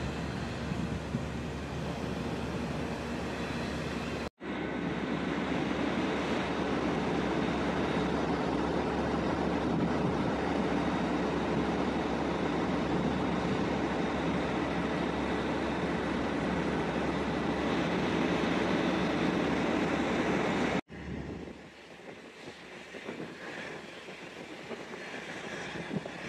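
Steady rushing noise of an offshore well-test burner flaring, with its seawater cooling spray, and rig machinery. The level changes abruptly twice: louder from about four seconds in, then quieter after about twenty-one seconds.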